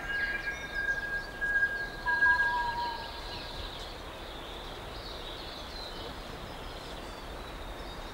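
Kōkako call in forest: a long, pure whistled note held for about three and a half seconds, with a lower note joining it around two seconds in, then faint steady forest hiss.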